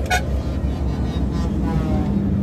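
Steady low engine and road rumble inside a tow truck's cab while it drives along.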